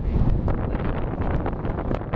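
Wind buffeting the microphone of a camera on the open deck of a moving tour boat: a steady, dense low rumble with irregular gusty crackles.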